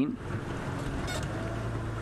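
Game-drive vehicle's engine idling, a steady low hum, with a faint short high sound about a second in.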